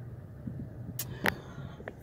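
A few sharp clicks and knocks, about a second in and again near the end, from a phone being handled and moved around inside a truck cabin, over a low steady hum.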